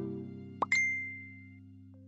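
Background music: soft keyboard notes ringing and fading, with a single bright chime-like note struck about half a second in.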